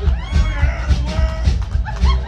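A rockabilly band playing live on drums and upright bass. A steady pounding beat runs under a high part whose notes slide up and down in pitch.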